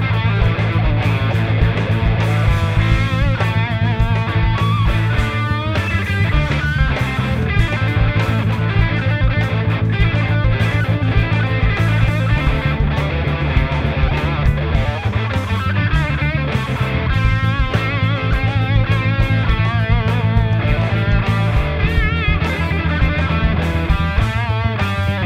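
Gibson Les Paul Classic electric guitar with '57 Classic humbuckers playing a lead line full of bent and vibrato notes. It plays over a steady low accompaniment with a beat, its chords changing every couple of seconds.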